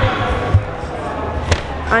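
Busy shop-floor hubbub with voices in the background, broken by a couple of dull thumps, about half a second and a second and a half in, the second with a sharp click.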